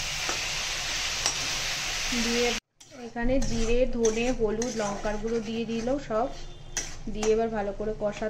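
Potatoes frying in oil in a steel kadai give a steady sizzle for the first two and a half seconds, then the sound cuts off briefly. After that, a wooden spatula stirs and knocks against the kadai while a voice holds long, wavering notes.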